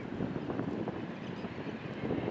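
Wind buffeting the microphone in uneven gusts, over a low rumble.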